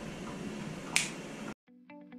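Quiet room tone with one sharp click about halfway through; the sound then cuts out abruptly and plucked-guitar background music begins near the end.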